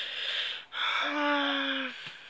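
A man's voice in a long hesitation filler, 'yyy', held on one steady pitch for about a second, after a short breathy hiss at the start.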